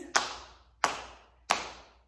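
Hands patting on the knees in a slow, steady beat: three even pats about two-thirds of a second apart.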